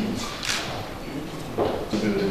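Background noise of a room with a small group of people: a steady hiss, a brief rustle about half a second in, and faint voices toward the end.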